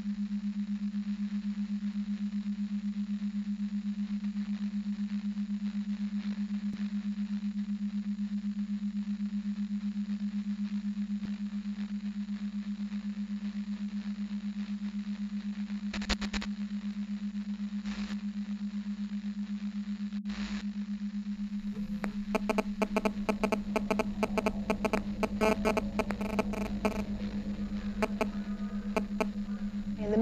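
Electronic soundtrack: a steady low hum tone, with a few sharp clicks past the middle. The last eight seconds add a run of dense, glitchy crackling like radio static.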